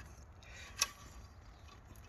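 Engine oil dipstick being drawn out of its tube on a Land Rover Discovery 3 2.7 V6, quiet handling with a single light click a little under a second in.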